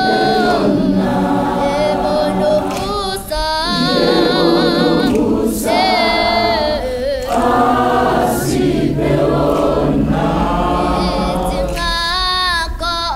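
A large mixed gospel choir of young men and women singing a South African gospel song in harmony, in phrases a few seconds long. A high voice with a wide vibrato sings above the choir's sustained chords.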